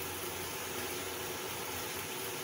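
Covered wok cooking over a lit gas burner: a steady hiss of flame and food heating under the steel lid, with a faint low hum underneath.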